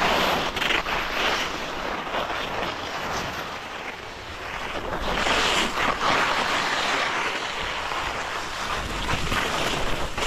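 Skis scraping over choppy, tracked snow on a steep slope, swelling with the turns near the start and again from about five seconds in, with wind noise on the microphone underneath.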